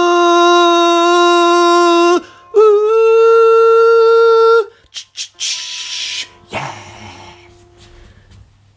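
A man's voice holding two long sung notes to close the song, the second one higher, each with a clean steady pitch. After the singing stops there are a few short clicks and a brief hiss, then the sound fades.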